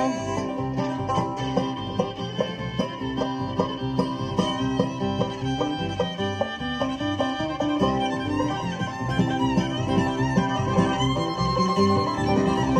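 A live bluegrass band plays an instrumental break between verses, with no singing: fiddle, banjo, acoustic guitar and bass guitar. Near the middle, one note slides upward in pitch.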